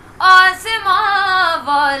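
A boy singing an Urdu devotional kalaam unaccompanied: after a brief pause, a long held, wavering note that slides gradually down in pitch.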